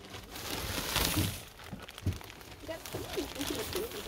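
Clear plastic sheeting crinkling as it is handled, loudest in the first second and a half, with faint voices in the background.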